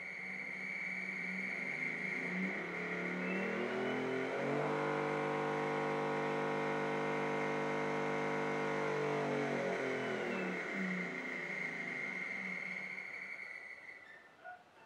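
Nidec Unimotor brushless DC servo motors, coupled shaft to shaft, whining as they spin up under torque control to about 3,000 rpm. The pitch rises for about four seconds, holds steady, then falls as the motors slow down near the end. A steady high-pitched tone runs underneath throughout.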